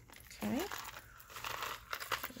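Stiff kraft paper card rustling and scraping as it is handled and turned over in the hands, with a few small clicks.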